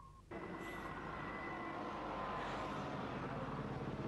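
A heavy vehicle's engine running steadily, cutting in suddenly about a third of a second in.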